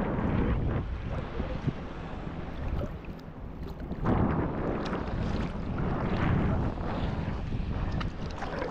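Sea water sloshing and lapping around a camera held at the surface among small waves, with wind buffeting the microphone. The water surges louder about halfway through and again a couple of seconds later.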